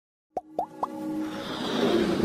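Sound effects of an animated logo intro: three quick pitched pops about a quarter second apart, then a swell that builds steadily louder.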